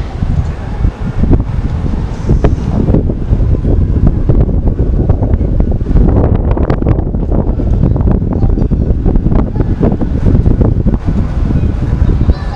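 Wind buffeting the camera's microphone: a heavy, irregular low rumble that rises and falls.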